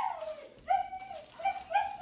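Labradoodle puppy giving about four short, high-pitched yips in quick succession.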